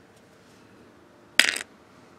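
Small plastic doll accessories clattering onto a hard plastic play case: one quick cluster of sharp clicks a little past halfway through, with faint room tone around it.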